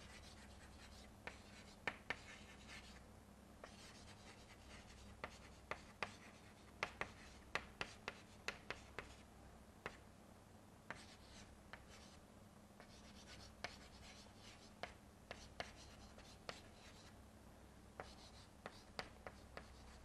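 Chalk writing on a blackboard: faint, irregular taps and short scratchy strokes as words are written out, over a steady low hum.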